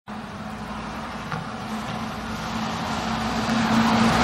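City bus approaching along the road. Its engine hum and tyre noise grow steadily louder as it draws near.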